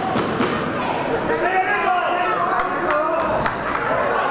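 Voices shouting from ringside over a kickboxing bout, with the sharp smacks of gloved punches landing, a quick run of several in the last second and a half.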